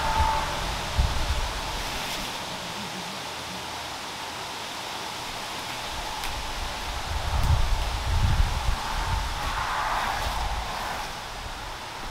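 Flower stems rustling as a bouquet is handled, over a steady outdoor hiss, with low rumbling that swells from about seven to ten seconds in.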